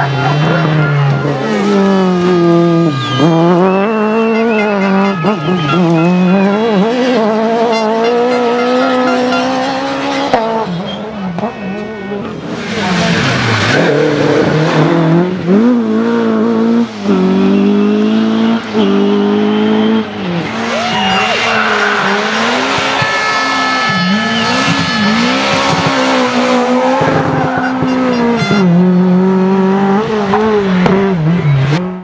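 Historic rally cars' engines revving hard through a corner, the pitch climbing and dropping again and again with the gear changes as car after car goes through, with tyre squeal and long rushes of noise partway through.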